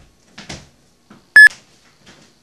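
Handling rustle, then a single short, loud electronic beep from a camcorder as its button is pressed while the camera is being grabbed.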